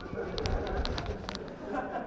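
Fabric rustling and brushing as a jacket is handled and set down, with a few short light ticks.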